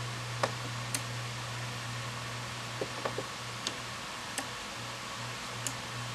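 A steady low hum with a faint hiss, and about eight light, scattered clicks spread over the few seconds.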